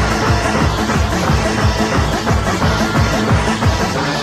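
Makina, a fast hard-dance electronic music, played in a DJ set: a steady kick drum at close to three beats a second under layered synth parts.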